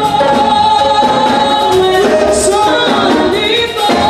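Woman singing a gospel song into a microphone, with other voices singing along; long held notes that slide between pitches.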